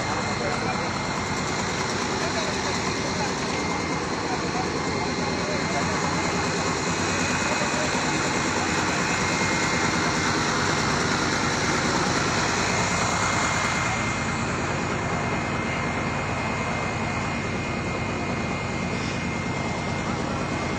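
A truck-mounted well-drilling rig's engine running steadily, a constant mechanical drone with a faint high whine.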